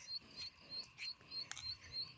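Frogs calling in a faint, regular run of short high chirps, about four a second, with soft footsteps on a dirt path beneath them.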